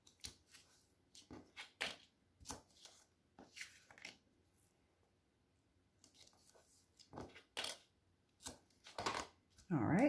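Short, irregular rustles and taps of watercolor paper and double-sided adhesive tape being handled and pressed down by hand on a cutting mat, with a pause partway through.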